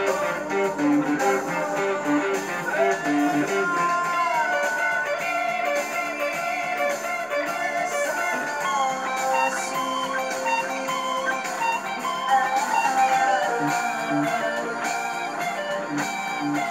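ESP LTD EX-50 electric guitar, played through a Zoom 505 II effects pedal, playing a lead line of held notes that slide and bend in pitch. A repeating lower part runs underneath.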